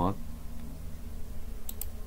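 Two quick computer mouse clicks in close succession near the end, over a low steady hum.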